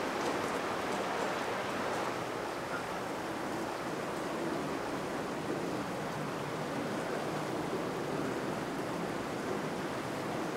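Steady rushing of flowing river water, an even wash with no breaks.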